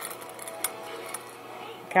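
Quarters clinking together in a plastic bowl as a parrot's beak rummages through them: three sharp clinks about half a second apart.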